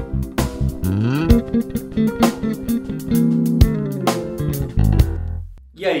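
Electric bass (Fender Jazz Bass) playing a groove over a C7 chord, mixing the root with arpeggio notes, chromatic passing notes and blue notes, with regular sharp percussive hits. It ends on a low note that rings out and fades about five seconds in.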